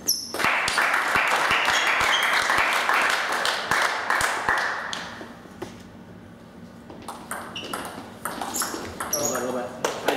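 Table tennis ball clicking off rubber paddles and the table in quick exchanges, over a loud stretch of voices in the hall during the first half. A short shout comes near the end.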